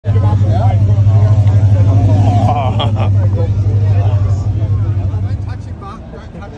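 A motor vehicle engine running steadily with a low, even hum, fading away near the end, under crowd chatter.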